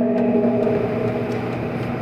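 A man's voice at a microphone holding one drawn-out vowel at steady pitch, a hesitation sound mid-sentence, fading out near the end.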